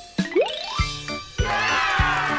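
Cartoon sound effects over children's background music with a steady beat: a short rising whistle-like glide, then a falling cascade of tinkling chimes near the end.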